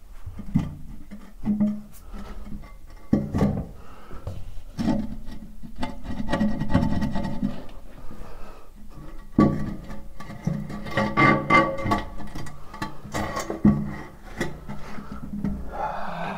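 Guitar background music over intermittent knocks and rubbing from hand work on a bidet being worked loose from the floor.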